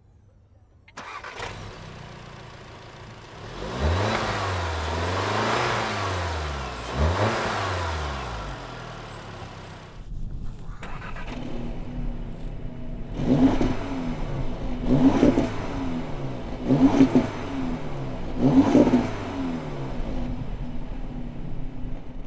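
Audi S3's turbocharged 2.0-litre four-cylinder engine heard through its quad exhaust, coming in suddenly about a second in and revved in long rising and falling sweeps. After a short break it settles to idle with four short, sharp throttle blips.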